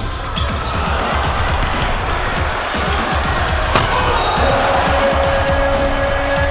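Backing music with a steady beat over arena game sound: a basketball bouncing on the hardwood court and crowd noise that swells from about a second in. A single sharp knock comes near four seconds in.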